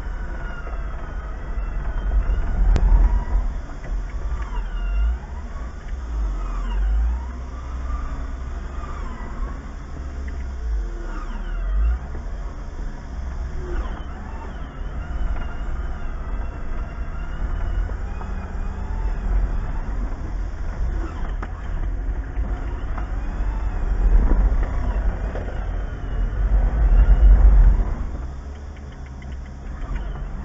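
Jeep Wrangler JK engine running at low revs as it crawls up a rutted dirt trail, a deep rumble heard from inside the vehicle. The engine swells louder twice near the end.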